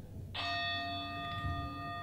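A meditation bell struck once about a third of a second in, ringing on with several steady overtones that fade slowly.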